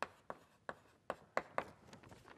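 Chalk writing on a blackboard: about six short, sharp taps and strokes of the chalk in quick, uneven succession as letters are formed.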